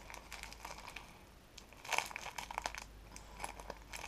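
Small clear plastic bag of Lego pieces crinkling as it is handled and opened by hand, in two spells of crackle: one about two seconds in and a shorter one near the end.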